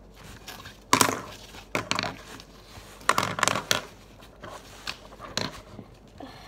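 Hands rummaging through a zippered pencil case, its pens and small items rustling and knocking together in several sudden bursts, the loudest about a second in.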